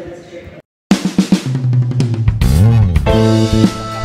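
Music with drums, starting about a second in after a short silence.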